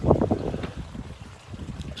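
Wind rumbling on an outdoor microphone, strongest at first and easing about halfway through.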